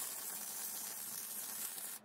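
MIG welder's arc crackling and hissing steadily as the wire-feed gun lays a bead on steel tubing.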